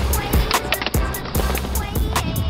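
Skateboard wheels rolling on smooth concrete, heard under a hip-hop music track with a steady beat.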